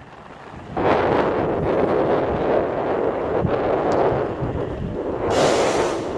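Wind rushing over the microphone of a rider moving on a Onewheel electric skateboard: a steady rush that sets in about a second in, with a brighter hiss shortly before the end.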